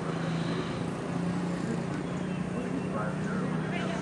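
A steady low hum under even background noise, with faint distant voices in the second half.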